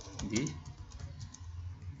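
Computer keyboard typing: a run of key presses at uneven spacing as a line of text is typed.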